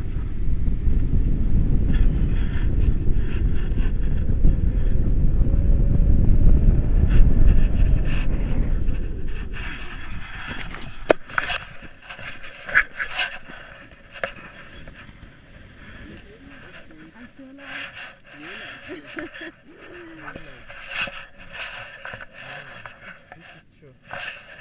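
Wind buffeting the camera's microphone as a tandem paraglider comes in low to land, a loud steady rumble that dies away about ten seconds in as they touch down. After that it is much quieter, with small clicks and rustles of harness and gear, and faint voices in the last few seconds.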